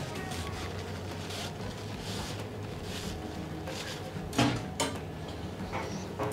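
Paper towel rustling against plastic safety goggles as they are wiped dry, over a steady low room hum. About four and a half seconds in come two sharper, louder rustles or knocks.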